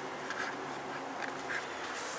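A few faint, short bird calls over a low, steady background.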